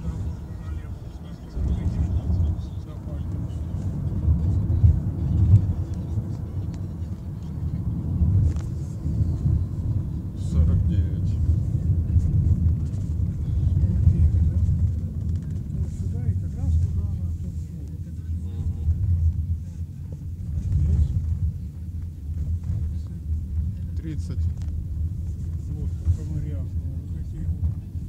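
Low rumble of a moving car heard from inside the cabin, swelling and easing irregularly.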